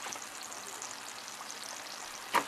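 White sweet potato chunks frying in hot oil in a pan: a steady sizzle with fine, continuous crackling.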